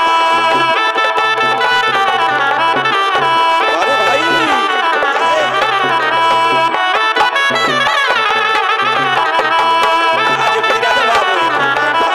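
Instrumental break of Kudmali Jhumar folk music: a melody with sliding, ornamented pitches over a steady hand-drum rhythm.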